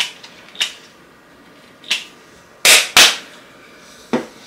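Toner bottle and cotton pad being handled: a few light clicks, then two loud sharp knocks close together near the end.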